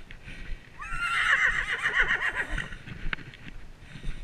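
A horse whinnies once, starting about a second in and lasting about two seconds: a sharp rise in pitch, then a quavering call that falls away. Hoofbeats on a dirt track run underneath.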